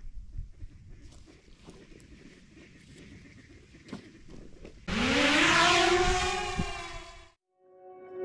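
Faint outdoor noise, then about five seconds in a DJI drone's propeller motors spin up: a loud whine that rises in pitch, then holds steady before it cuts off about two seconds later.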